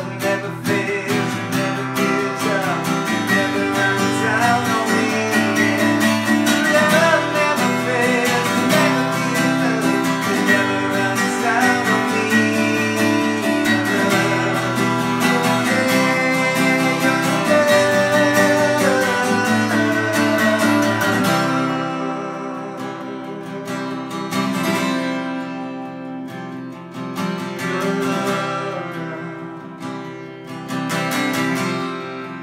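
A man singing a worship song to his own strummed acoustic guitar. About two-thirds of the way through the singing stops and the guitar carries on alone, softer.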